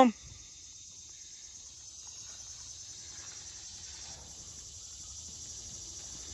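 Steady high-pitched chorus of field insects, growing slowly a little louder.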